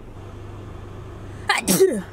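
A woman sneezes loudly, a two-part "ah-choo" about one and a half seconds in, over the low steady hum of the idling car.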